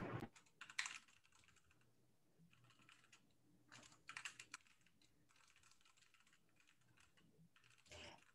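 Very faint computer keyboard typing: scattered short keystrokes in small clusters.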